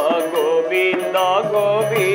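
Indian devotional music: a harmonium holds steady notes under a male voice singing a wavering melodic line, with strokes on a double-headed barrel drum.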